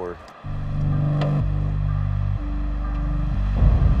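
Background music score: low, sustained notes that come in about half a second in and step to a new pitch roughly once a second.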